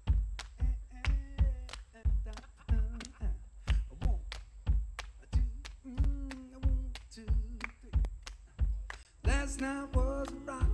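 Live percussion groove: a bass drum thumping about twice a second with sharp taps between the beats. Short wordless vocal notes come in over it, and full singing starts near the end.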